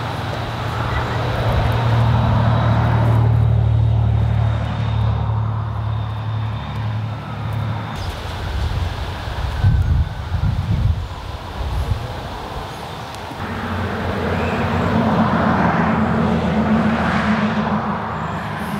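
A motor vehicle's engine running close by, swelling over the first few seconds and fading out by about eight seconds in. Irregular low rumbling follows, and a second, higher-pitched engine note comes in about three-quarters of the way through.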